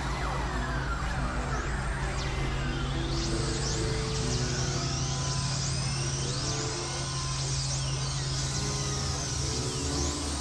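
Experimental electronic synthesizer drone music: a steady low drone with held tones shifting above it. From about three seconds in, many overlapping high swooping pitch glides, like sirens, are added.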